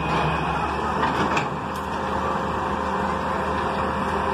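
Hitachi EX200-1 excavator's diesel engine running steadily, with a few faint knocks between one and two seconds in.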